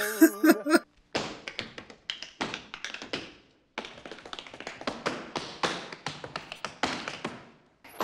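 Tap shoes striking a stage floor in a fast, irregular run of taps, with a short pause about three and a half seconds in. A brief voice is heard at the very start.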